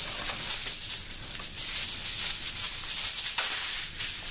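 Aluminum foil crinkling and rustling as it is handled and pulled off the roll, with a sharper crackle about three and a half seconds in.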